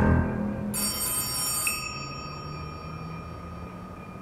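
Moody background music with a telephone bell that starts ringing a little under a second in and keeps going.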